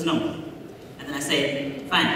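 Only speech: a man talking over a headset microphone in two short phrases, with a brief pause between them.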